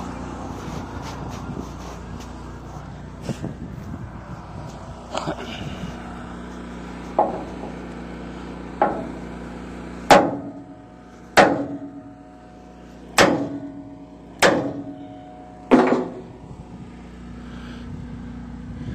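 Homemade sledgehammer striking the steel ramp: a few lighter knocks, then five heavy blows about one to two seconds apart, each leaving the steel ringing. The blows are meant to pop the cracked, sagging ramp corner past a lip it is catching on, so it comes up into alignment for welding.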